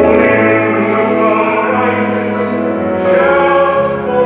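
Choir singing the sung response of the responsorial psalm, with long held notes and musical accompaniment.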